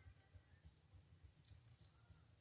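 Near silence: faint room tone, with two faint ticks about a second and a half in.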